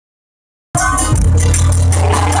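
A live dangdut koplo band playing loudly through the stage PA, cutting in abruptly under a second in: a deep held bass, a keyboard melody and fast, steady high percussion.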